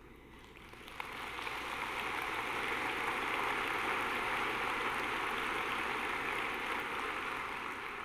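Large audience applauding in a hall: the clapping begins about a second in, builds, then tapers off near the end.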